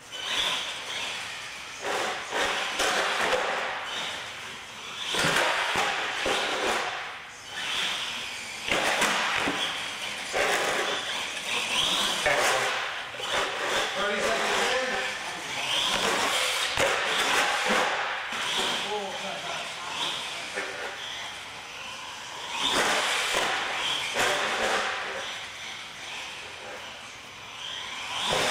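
Indistinct voices echoing in a large hall, mixed with the running of a radio-controlled monster truck driving on a concrete floor. The sound swells and fades irregularly throughout.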